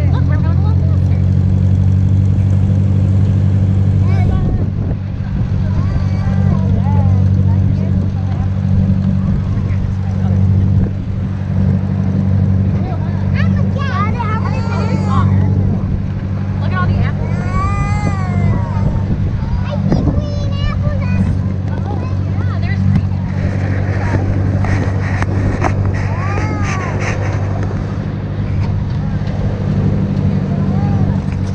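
Small farm tractor's engine running at a steady pace as it tows a hay wagon, a constant low drone throughout. Children's voices rise over it at times, most around the middle and again near the end.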